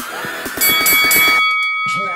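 Electronic dance music with a steady beat. About half a second in, a bright ding rings for about a second as the beat drops away: the game's timer chime, signalling time is up and the next number is coming.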